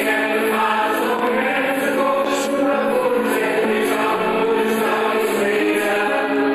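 A mixed amateur choir of men and women sings a song arranged as swinging reggae. It is badly recorded on a phone, with little bass.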